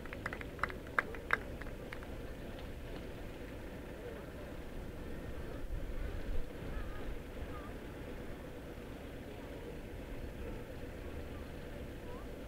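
A few scattered hand claps in the first second or so, then steady outdoor ambience: a low rumble with faint voices.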